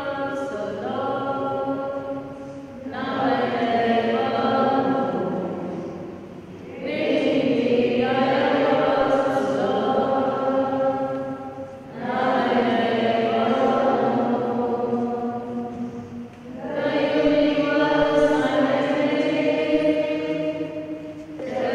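Choir chanting in long held phrases, with a brief pause between each phrase.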